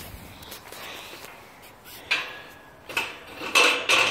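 Green steel mesh fence gate rattling and clanking as it is held and climbed, in a few bursts with brief metallic ringing, the loudest near the end.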